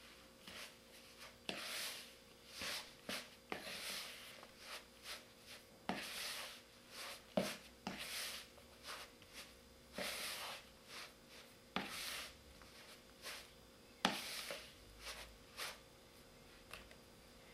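Sticky bread dough being worked by hand in a plastic bowl, kneading in the butter: a faint, irregular series of squishes and slaps, some with a sharp click at the start.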